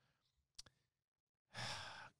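Near silence with a faint click, then a man's audible breath, a sigh-like rush of air, starting about one and a half seconds in.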